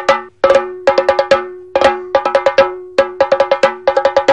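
Chenda drumming: rapid stick strokes in short clusters of four or five, about two clusters a second, each stroke bright and ringing, over a steady tone beneath.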